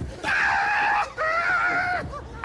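A person screaming: two long, high-pitched screams, each lasting under a second, with a short break between them.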